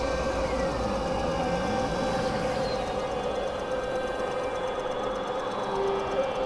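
Experimental electronic drone from synthesizers: several sustained tones held steady, with a few slow sliding tones in the first couple of seconds.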